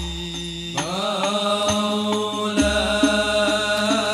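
Islamic devotional qasidah chanted over rebana frame drums. A sung line enters about a second in with a rising phrase over a held low note, and the drum strokes settle into a regular beat in the second half.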